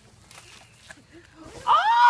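After a quiet start, a loud, high-pitched human shriek begins near the end, its pitch rising and then falling.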